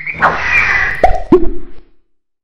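Cartoon sound effects for an animated logo intro: a swoosh, then two quick tones that drop sharply in pitch about a third of a second apart, cutting off just before speech starts.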